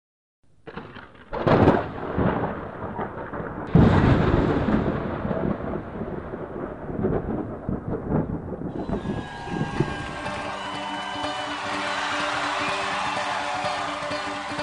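Thunder rumbling, with two loud claps about a second and a half and about four seconds in, each rolling away. About nine seconds in, music with long held chords comes in and builds.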